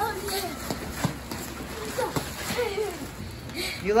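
A child's high-pitched voice, too indistinct to make out words, with a few sharp taps in between.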